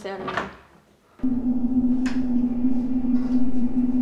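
A few spoken words, then a short lull. About a second in, a steady low hum starts abruptly, with a low rumble under it, and holds unchanged.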